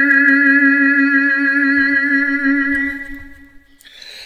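One long sung note held steady with a slight waver, fading out about three seconds in, followed by a quick intake of breath.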